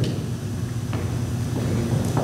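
Steady low hum of the meeting room heard through the table microphones, with one light knock about a second in.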